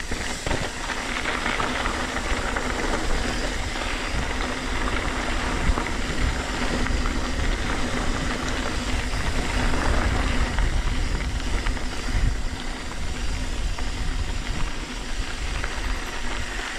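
Mountain bike rolling over a loose, gravelly dirt trail: a steady rumble of tyres on dirt and grit with the bike's rattle over the rough surface.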